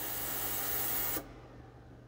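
Ultrasonic cleaner running, a steady hiss from its water tank, which cuts off suddenly a little over a second in as the countdown timer runs out and the cleaning cycle ends. A faint low hum carries on afterwards.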